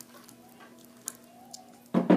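A low, steady hummed "mmm" from someone holding sour candy in the mouth, with a few faint clicks and crinkles of a small candy wrapper being picked at.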